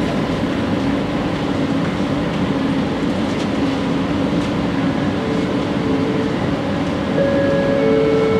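Bombardier Innovia ART 200 train standing at a station platform with its doors open: a steady hum of the train's equipment and the station. From about five seconds in, a series of short electronic beeps starts, becoming louder and longer near the end.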